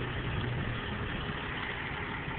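Motor vehicle engine idling steadily, with a low hum that fades a little under a second in.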